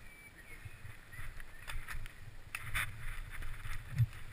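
Mountain bike rolling down a rocky trail: a low, continuous rumble with irregular knocks and rattles as the tyres and frame go over stones.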